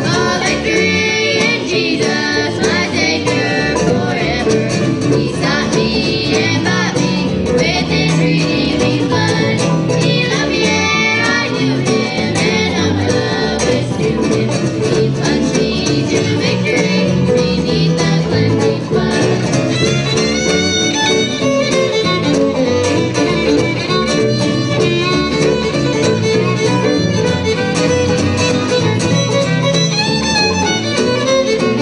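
Live bluegrass band playing an instrumental passage, with fiddle lead over five-string banjo, acoustic guitar and upright bass.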